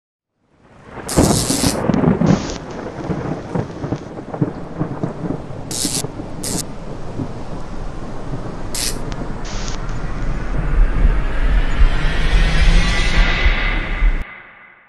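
Thunderstorm sound effect: a sharp thunder crack about a second in, then rumbling thunder and rain. It builds louder and rises over the last few seconds, then cuts off suddenly.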